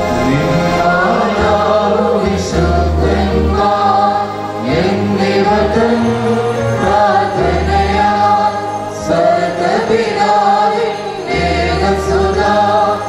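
Choir singing a liturgical hymn of the Holy Qurbana, several voices together, with sustained low notes that change about once a second beneath the melody.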